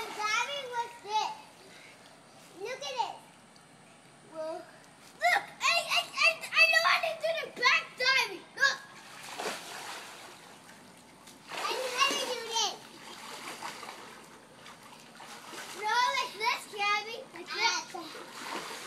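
Young children calling out and squealing in high voices while splashing in pool water, with bursts of splashing between the calls.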